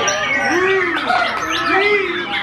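Several caged white-rumped shamas singing at once: a dense, overlapping mix of whistled notes and chatter, with repeated low, arching notes beneath the higher song.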